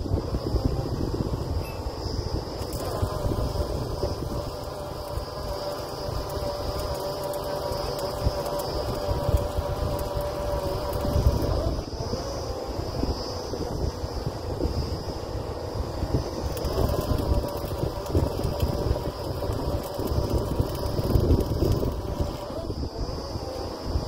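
Truck-mounted borewell drilling rig's engine running steadily, with gusty wind rumbling on the microphone.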